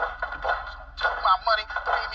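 Speech played back through a laptop's small speaker, thin-sounding and lacking low end, with a short pause near the middle. A faint steady low hum runs underneath.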